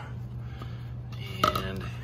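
One sharp hard-plastic knock about one and a half seconds in, as the 3D-printed oil funnel is handled coming off the engine's oil filler neck. A steady low hum runs underneath.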